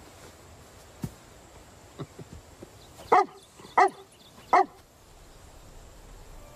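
A dog barks three times, short sharp barks about two-thirds of a second apart, in the middle of the stretch, calling for attention.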